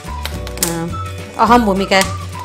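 Dry wheat grains clicking and rattling against a nonstick pan as they are stirred with a silicone spatula while they roast, over steady background music. A voice rises over the music in the second half.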